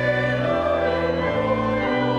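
Sacred choral music with instrumental accompaniment: sustained chords, the bass note changing about every second.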